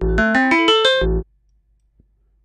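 MSoundFactory software-synth arpeggio of short, struck-sounding pitched notes, stepping rapidly up and then back down for just over a second before stopping. It has a low thump at its start and end.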